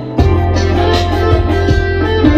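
Electric guitar played over a full backing with a steady bass line and drum hits; the music drops out for a moment at the very start, then comes back in.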